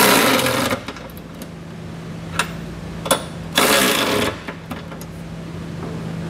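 Power ratchet with a 19 mm socket running in two short bursts, one right at the start and one about three and a half seconds in, each well under a second long, snugging down a trailer hitch's mounting bolts.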